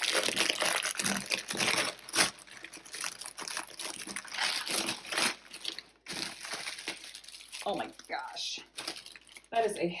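Clear plastic bag full of small plastic packets of diamond-painting drills being handled and pulled open, a dense crinkling and crackling for about the first six seconds that thins out after that.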